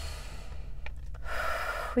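A woman breathing audibly in a pause between words: a short breath near the start, then a longer in-breath just before she speaks again. A low steady hum runs underneath.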